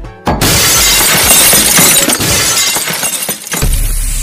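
Logo-reveal sound effect: after a brief pause, a loud burst like shattering glass lasts about three seconds over music, and a low hum sets in near the end.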